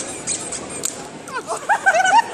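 Rubber squeaker toy squeezed in a quick run of short squeaks that bend up and down in pitch, over background chatter; the squeaks come mostly in the second half and grow louder.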